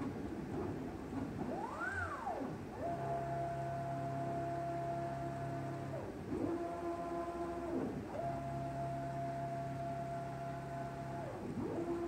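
Gantry drive motors of a CNC plasma cutting table whining as the head traces a box around the plate in a laser-only dry run, with the plasma torches off and not cutting. The whine climbs in pitch as each move speeds up, holds a steady pitch along each side, and drops at each corner. There is one short move near the start, then three longer ones.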